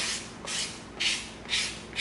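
Hand sanding the edge of EVA foam with 220-grit sandpaper on a flat stick, giving it a final smoothing: rhythmic scratchy strokes, about two a second.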